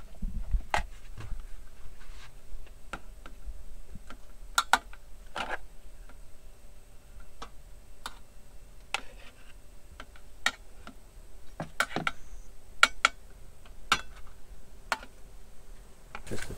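A metal spoon clinking and scraping against a bowl and a dinner plate while broccoli salad is served: irregular light clicks, a dozen or more, over a faint steady hum.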